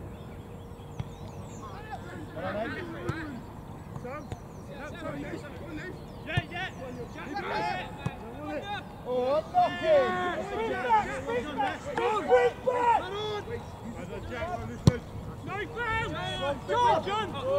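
Distant, overlapping shouts and calls from footballers across the pitch, growing busier and louder about nine seconds in. One sharp knock near the end.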